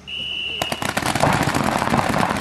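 A short, steady high-pitched start signal, then many paintball markers firing rapidly at once as the point opens, a dense crackle of shots that begins about half a second in and keeps going.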